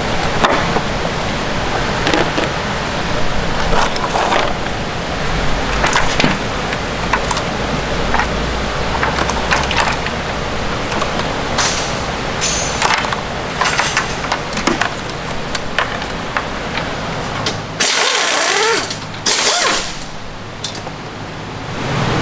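Hand tools working on an engine: scattered clicks, knocks and ratchet clicking as bolts and parts come off. Over a steady shop hum, two loud bursts of hissing come near the end.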